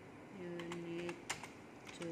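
Computer keyboard keys being typed, a handful of short separate clicks, while text is entered into a form. A short steady hum sounds under the first clicks.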